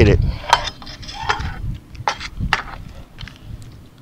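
A handful of light, scattered clicks and clinks of fishing tackle being handled.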